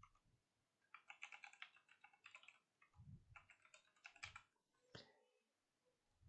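Faint typing on a computer keyboard in two quick bursts of keystrokes, then a single click near the end.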